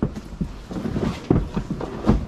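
Irregular knocks and thumps of boots and gear as workers move about in a train doorway, about six to eight of them.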